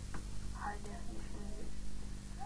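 A low, half-heard voice mumbling briefly under a steady low hum, with a single click near the start.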